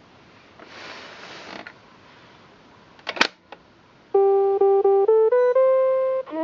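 Texas Instruments Peek-a-Boo Zoo electronic toy: a plastic click as a hiding hand pops up, then the toy's speaker plays a short beeping jingle, three quick repeats of one note, then a few steps upward to a held higher note.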